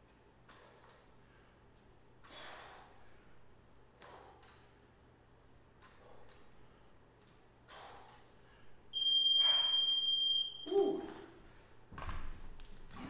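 Hard breathing from exertion during dumbbell swings, one exhale every second or two. About nine seconds in, a workout interval timer beeps one long high tone for about a second and a half, marking the end of the work interval, followed by a short vocal sound.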